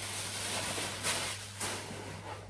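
Paper and cardboard packaging rustling as a box is unpacked by hand, with a couple of louder crinkles about a second and a second and a half in, over a steady low hum.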